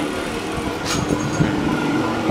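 A steady engine hum with a low rumble underneath, and a short click about a second in.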